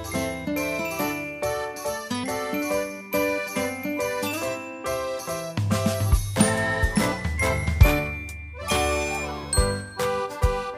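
Background music: a light, tinkling tune of bell-like notes in a steady rhythm, with a bass line growing stronger about six seconds in.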